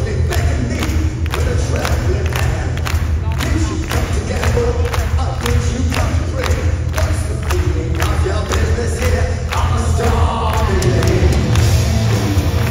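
Heavy metal band playing live, with drums keeping a steady beat of about two to three hits a second over a heavy bass, and an audience cheering, recorded from within the crowd in a large hall.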